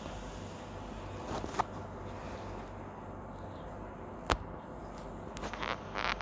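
Steel ladle stirring mushrooms through thick masala paste in an aluminium kadai: a few faint scrapes, one sharp clink of the ladle against the pan about four seconds in, and a run of short scrapes near the end, over a low steady hum.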